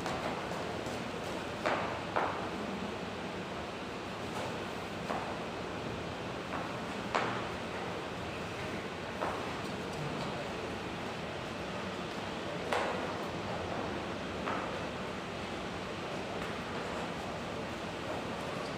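Knife blade tapping now and then on a plastic chopping board while cutting a green capsicum: about a dozen single, sharp clicks a second or more apart, over a steady background hiss.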